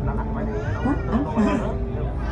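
People's voices with short rising and falling exclamations over a steady low engine hum.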